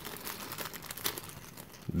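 Thin clear plastic baggie crinkling as it is handled and opened, a rapid run of small crackles that thins out and fades toward the end.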